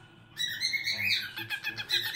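Cockatiel chattering in a quick run of short, high chirps, starting about a third of a second in.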